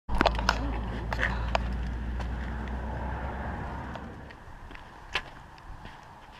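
Clicks and knocks of an action camera being handled, over a low steady hum that fades away over the first four seconds; a single sharper knock comes about five seconds in.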